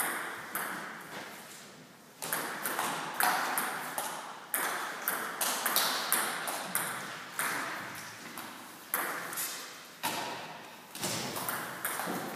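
Table tennis rallies: the ball clicking sharply off the bats and the table, about two hits a second, each click echoing in the hall. There are a few hits at first, a longer rally from about two seconds in to about ten, and another rally starting near the end.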